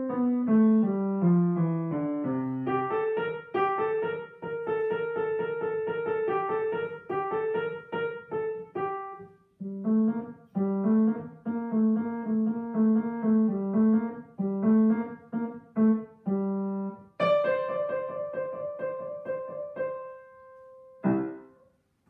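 Grand piano played solo: a falling run of single notes, then quick repeated notes, a brief pause about nine seconds in, and more repeated lower notes. A loud chord about seventeen seconds in rings on, and a short final chord near the end closes the piece.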